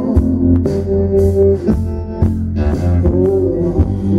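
Live band music: electric guitar over bass and drums, played at full concert volume.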